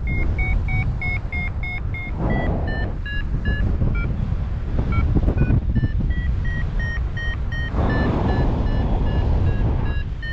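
Paragliding variometer beeping its climb tone, a steady chain of short beeps that drops a little in pitch about two seconds in, signalling the glider is going up in a thermal. Wind rushes over the microphone underneath, swelling at times.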